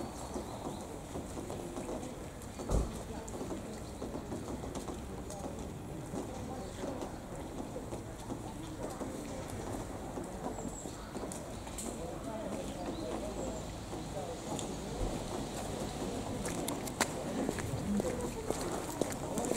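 Street ambience of passers-by talking indistinctly, with a single thump about three seconds in.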